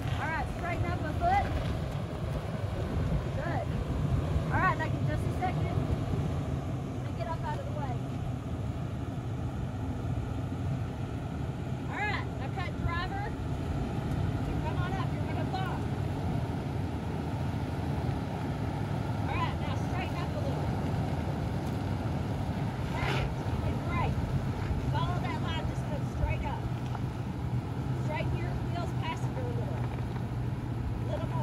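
Lexus GX460's V8 engine running low and steady as the SUV crawls slowly over rock ledges, with a few short, faint high chirps scattered over it.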